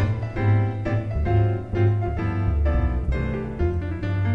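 Instrumental break in a live song: piano playing chords and melody over a low bass line, with no voice.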